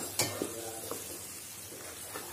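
Wooden spatula stirring tomato paste through hot oil in a kadai, with a soft sizzle of frying and one knock of the spatula against the pan just after the start.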